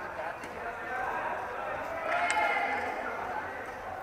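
Indistinct chatter of several voices echoing in a large indoor sports hall, growing louder about two seconds in, where one brief sharp click stands out.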